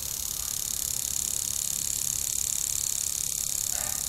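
Impact lawn sprinkler running: a steady hiss of its water jet that grows louder as the jet swings around, with a fine regular ticking from the sprinkler head.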